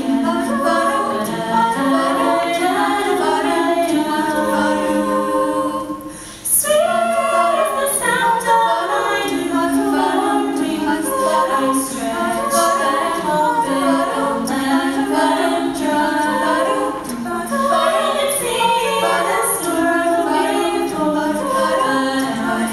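Mixed-voice a cappella group singing in close harmony, several parts at once with no instruments. The voices drop away for a moment about six seconds in, then come straight back in.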